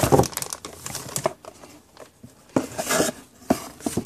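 Plastic bag crinkling and a cardboard box rustling as a small plug-in ionic air purifier in its bag is slid out of the box, with a few light knocks as it is handled on a wooden table. There is a quieter stretch about halfway through.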